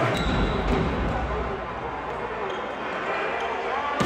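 A volleyball being bounced and struck during play in an indoor sports hall: a few sharp smacks of the ball over a steady din of crowd voices echoing in the hall.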